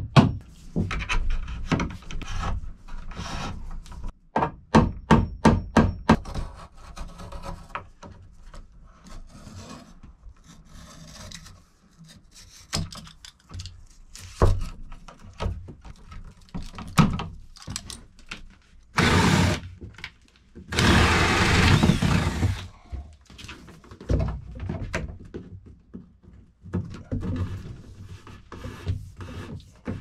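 A hammer tapping cable staples into wooden wall studs in quick runs of light strikes, at the start and again about five seconds in. Later, electrical cable rubbing against the wood as it is pulled through holes in the studs, loudest in two noisy spells about two-thirds of the way in.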